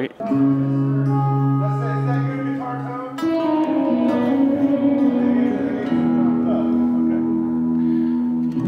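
Journey OE990 folding travel electric guitar played through an amp: slow chords, each left to ring for a second or more. The chord changes about three seconds in and again around four and six seconds.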